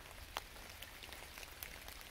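Light rain falling on wet leaf litter: a faint steady hiss with a few scattered single drop ticks.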